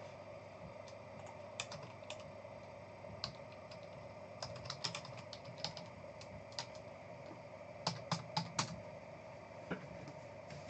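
Typing on a computer keyboard: irregular, faint key clicks, with a quicker run of keystrokes about eight seconds in.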